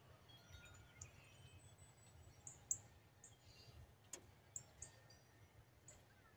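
Near silence outdoors, broken by a few faint, brief, high-pitched bird chirps and a couple of soft clicks.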